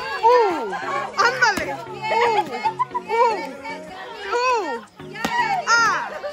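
Children yelling and squealing over background music, with a few sharp whacks of a stick hitting a piñata, the clearest one about five seconds in.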